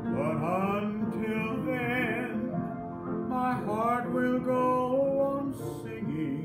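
A man singing a gospel song in an unamplified voice, gliding into and holding long notes, over a steady instrumental accompaniment.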